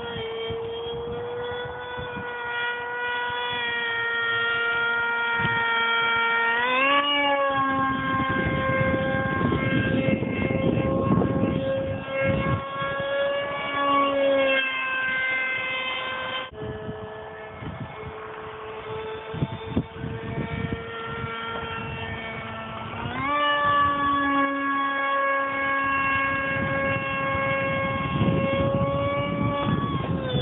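Whine of an RC jet's Super Megajet brushless motor and 7x5 propeller in flight: a steady high tone that rises in pitch twice, about a quarter of the way in and again about three-quarters of the way in, as the throttle is opened. Wind buffets the microphone underneath.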